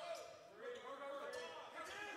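Basketball being dribbled on a hardwood court in a large, mostly empty hall, with faint voices behind it.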